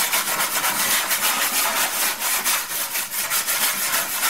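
A dishwasher tablet scrubbed rapidly back and forth over the greasy floor of an oven, making loud, continuous gritty rubbing strokes.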